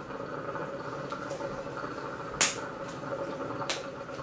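Hookah water bubbling steadily through a long draw on the hose. Two sharp clicks, about halfway through and near the end, are the loudest sounds.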